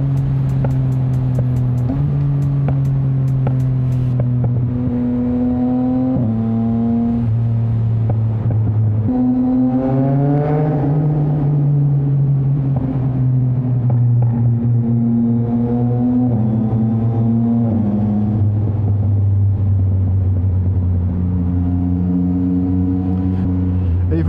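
Yamaha MT-09's three-cylinder engine through a straight-piped Mivv exhaust with no catalytic converter or silencer, running loud on the move and echoing off the tunnel walls. The note holds steady in stretches and steps up and down between them, climbs in a rising rev about ten seconds in, and settles to a lower, slower note in the last few seconds. A rapid run of sharp ticks comes in the first few seconds.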